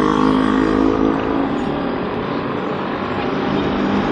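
Motorcycle engine running steadily while riding along a road, with a humming drone that is strongest in the first couple of seconds.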